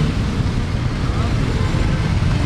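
Busy street traffic: a steady low rumble of motorcycles and other vehicles, with faint voices of people around.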